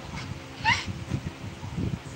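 A toddler's short, rising squeal about a second in, then a few dull bumps and rustles of the phone being handled close to her.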